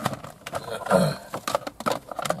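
Plastic dash trim panel being pushed and knocked into its clips by hand: a few sharp plastic clicks and knocks with rubbing, the loudest scuffle about a second in. The panel is a tight fit.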